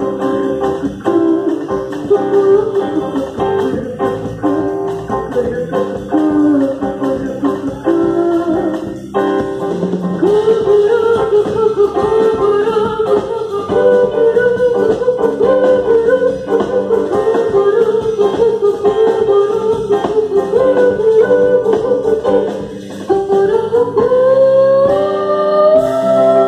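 Live band music with a female singer's voice carrying a wavering melody over the accompaniment; near the end a long rising glide climbs steadily in pitch.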